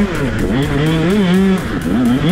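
KTM SX 125 single-cylinder two-stroke engine running hard under load, its high revving pitch wavering with the throttle. The revs dip sharply just after the start and again near the end, climbing straight back each time.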